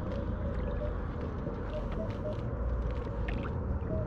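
Water sloshing steadily as someone wades through a shallow lake, with faint short beeps from a Minelab Equinox 800 metal detector as its coil is swept underwater.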